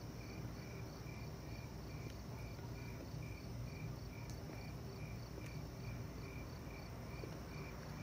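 Crickets chirping in a steady rhythm, a little over two high chirps a second, over a low steady hum, as the night-time ambience of a film's soundtrack picked up off the screen by a phone.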